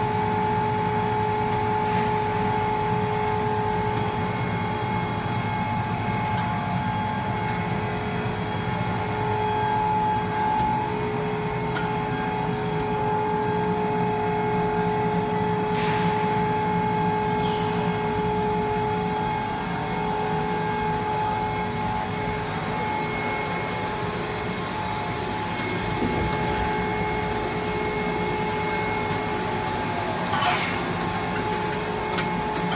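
PVC sheet extrusion line running: a steady machine hum with two steady tones over a low rumble from its motors and turning rollers, and a brief clack about halfway through.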